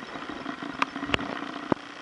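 A steady low motor hum, with three sharp clicks spaced through it.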